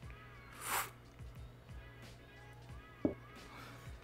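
A single short, airy slurp as hot black coffee is sipped from a ceramic mug, under soft background music.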